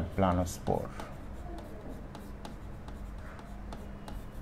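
A marker writing on a board in faint, short strokes, after a brief spoken word at the start.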